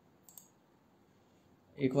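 Two quick mouse clicks about a third of a second in, over faint room tone.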